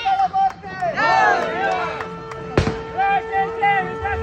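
Group of men shouting and calling out together in excited, rising-and-falling voices, over a steady tone. One sharp bang comes about two and a half seconds in.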